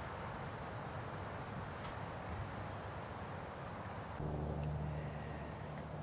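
Steady, low-level background noise, joined about four seconds in by a low, steady hum.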